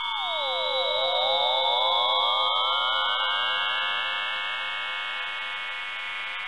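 Synthesized production-logo sound effect: a swarm of pure electronic tones sliding in pitch and crossing one another over a steady high tone, some sweeping down and then fanning back up. It swells to its loudest about two seconds in, then slowly fades.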